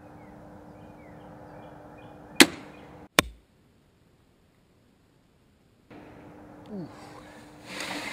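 Barnett Predator compound crossbow firing: a single loud, sharp crack of the string's release, then under a second later a second sharp crack with a low thud as the bolt strikes the bag target at 100 yards.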